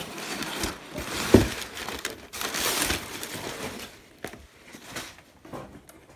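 Cardboard shipping box and its packing being rustled and scraped while a vinyl LP is pulled out, with a sharp knock about a second and a half in. The handling gets quieter, down to a few light clicks, near the end.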